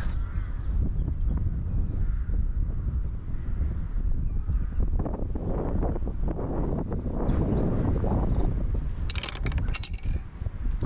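Wind rumbling and buffeting on the microphone of a handheld camera while walking, with a few sharp clicks just before the end.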